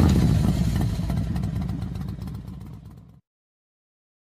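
Engine sound effect: a low, rapidly pulsing engine rumble that fades away and drops to silence about three seconds in.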